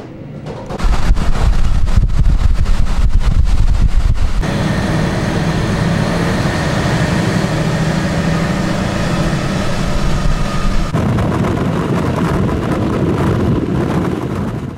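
Diesel railcar running along the line, heard from inside the car: engine and wheels on the rails make a loud, steady rumble. It starts as a deep rumble with regular clicks, then changes abruptly to a steadier hum with a faint whine about four seconds in, and changes again near the end.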